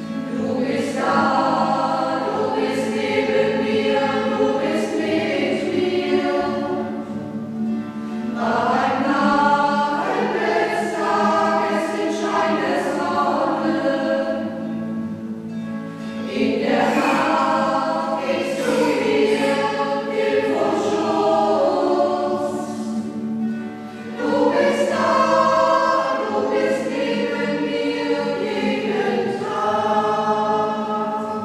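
Choir singing a church hymn in phrases of about eight seconds, with short breaks between them. Under the singing, a steady low accompaniment holds through the pauses.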